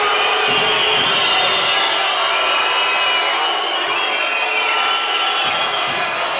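Handball arena crowd noise, a steady loud din with many shrill wavering whistles over it: the spectators reacting to a red card.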